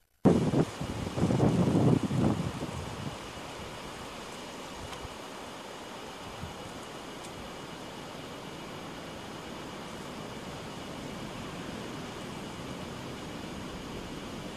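Wind buffeting the microphone in loud, uneven gusts for the first two seconds or so, then a steady outdoor rush of noise.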